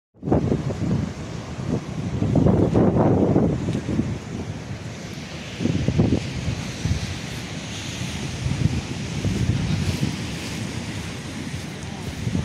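Wind buffeting the microphone in uneven gusts, strongest about two to three seconds in and again near six seconds, over a steady hiss of surf breaking on rocks.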